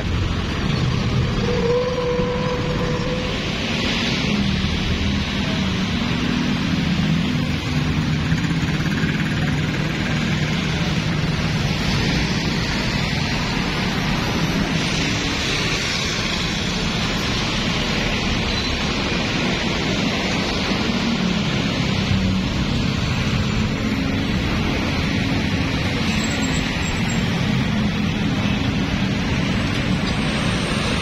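Steady road traffic noise at a busy junction.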